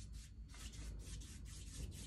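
Large watercolour wash brush stroked quickly back and forth over watercolour paper, wetting it with clean water: a faint run of soft brushing strokes.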